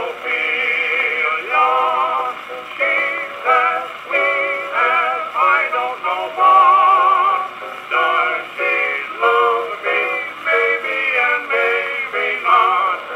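A 1924 acoustic 78 rpm record of a comic song duet playing on a circa-1910 Columbia 'Sterling' Disc Graphophone horn machine. A wavering melody with vibrato carries on without a break. The sound is thin, with no deep bass.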